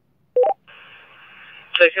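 Two-way radio channel: a short beep stepping up from a lower to a higher note, then about a second of radio hiss as a transmission opens, and a man's voice over the radio starting near the end.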